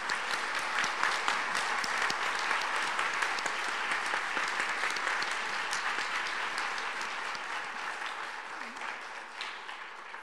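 Audience applauding: a dense crowd of hand claps that starts suddenly, holds steady, and tapers off slowly over the last few seconds.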